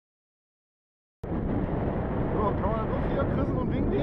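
Silent for about the first second, then wind noise on the microphone cuts in abruptly and runs on loud and rumbling, with a person talking indistinctly over it.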